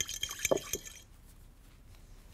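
A utensil stirring olive oil and spices in a glass bowl: a few light clicks and a brief clink in the first second, then quiet.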